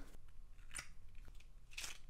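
A tiny cardboard box being opened and a small plastic bag of miniature pasta pieces handled: faint crinkling and clicks, with a short scratchy rustle just under a second in and another near the end.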